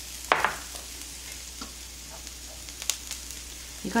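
Small dried anchovies frying gently in oil in a nonstick pan over low heat: a soft, steady sizzle. A couple of short knocks break in, one about a third of a second in and another near the end.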